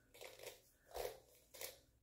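A few faint strokes of a soft plastic detangling brush being pulled through coily 4a/4b natural hair.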